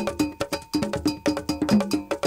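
Traditional Ghanaian percussion music: a struck bell and drums playing a quick, steady rhythm with pitched tones underneath.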